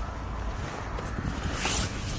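Handling rumble on a handheld microphone, then a brief rustling scrape near the end as a person climbs into a car's driver's seat.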